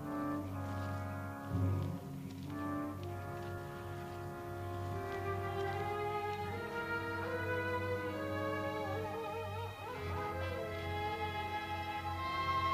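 Orchestral background score: held brass chords, then a wavering string melody rises over them in the second half.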